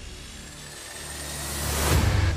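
Outro music sound effect: a rising whoosh over a low drone, swelling steadily louder toward the end.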